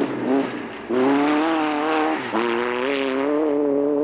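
Off-road racing buggy's engine revving hard under acceleration, its pitch climbing steadily. The note drops out briefly about two seconds in, then picks up and climbs again.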